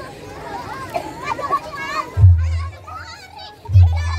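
Children shouting and chattering while they play on a trampoline. Twice, about a second and a half apart, there is a loud deep thud of the trampoline mat taking a bounce.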